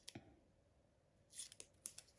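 Scissors snipping through a strip of paper: a few faint, short snips, two at the start and several more about a second and a half in.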